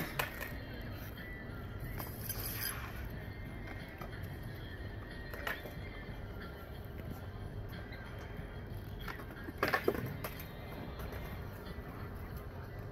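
Steady outdoor background noise with a few scattered sharp clicks, and a brief louder burst near ten seconds.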